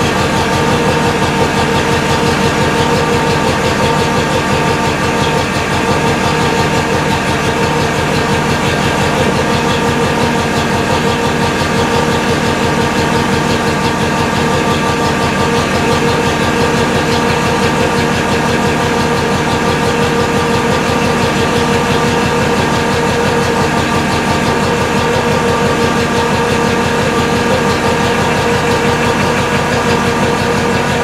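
Wrecker truck's engine running steadily, with a steady whine on top, as the boom winch drum turns and spools new synthetic winch rope.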